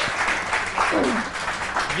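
Studio audience applauding, with a voice calling out briefly over it about a second in.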